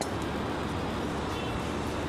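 Steady background noise, with a sharp knife click against a plastic cutting board right at the start as the blade passes through a piece of raw fish.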